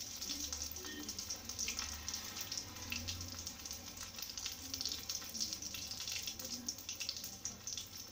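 Breaded egg cutlets deep-frying in hot oil in a steel pan: a steady sizzle with fine crackling.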